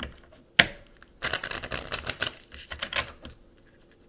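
A tarot deck being shuffled: a sharp snap of cards about half a second in, then a quick run of card clicks for about two seconds.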